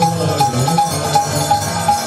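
Bengali Hindu devotional music: a moving melody over a steady percussive beat, with a short higher note repeating about four times a second.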